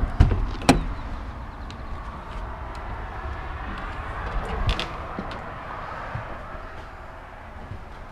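Fifth-wheel camper's entry door latch clicking twice as the handle is pulled and the door swings open, followed by scattered knocks and clicks as someone steps up and inside, over a steady low rumble.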